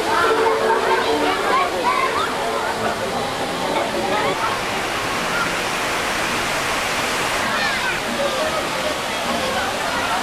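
Steady rushing and splashing water of a theme-park boat ride's channel and waterfall, with people's voices mixed in, most of them in the first few seconds.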